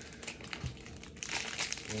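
Wrapping around a small Funko Pop vinyl figure crinkling as it is handled and pulled open, in quick crackles that grow denser about halfway through.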